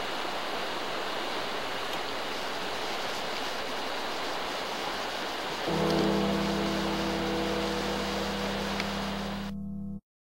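A steady rushing hiss of outdoor noise, then, a little past halfway, a held low musical chord begins and sustains without any beat. The hiss cuts off shortly before the end while the chord carries on.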